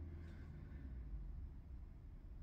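A pause in speech: quiet room tone with a low, steady hum.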